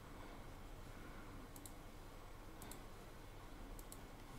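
Faint computer mouse clicks over low room noise: three short double clicks, about a second apart.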